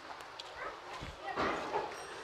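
A faint animal call about a second and a half in, against a quiet background with a few light clicks.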